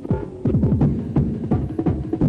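Happy hardcore rave music from a DJ set: a fast beat, about three beats a second, under a deep bass line that swoops down in pitch again and again.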